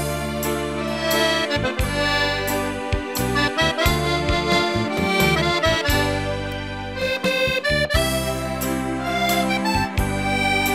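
Diatonic button accordion (organetto) playing a slow waltz melody over sustained chords and deep bass notes.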